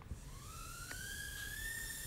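Motors and propellers of a tiny Axis Aerius micro quadcopter spinning up. A thin, faint whine rises in pitch as it lifts off, then holds steady while it hovers.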